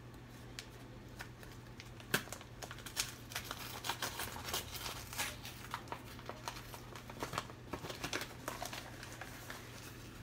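Paper mailing envelope being torn open and handled, with irregular rustling and crinkling and a louder crackle about two seconds in.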